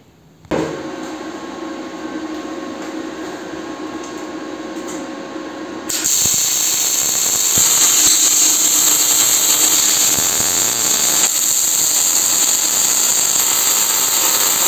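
Power tools working a sheet-steel tractor hood: a steady motor whine starts about half a second in. About six seconds in it gives way to a louder angle grinder grinding the steel, with a steady hiss.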